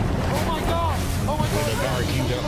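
Rushing water and wind rumble on the microphone, with a person's voice over it in short cries that rise and fall in pitch.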